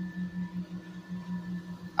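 A steady low hum with a slight regular waver and a few faint higher tones above it.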